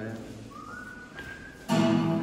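Acoustic guitar being played in a large hall, quieter in the middle. A thin whistle-like note rises and then holds for about a second, and a loud, fuller sound comes in suddenly near the end.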